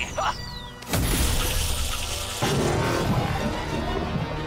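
Cartoon sound effects over background music: a short falling whistle, then about a second in a sudden loud crash of rock shattering, followed by a rumble of flying debris.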